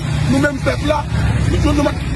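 A man speaking in Haitian Creole over a steady low rumble.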